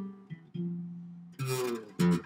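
Jazz guitar played slowly: a note dies away, a new low note is picked about half a second in and rings, then a brighter note is struck near the end.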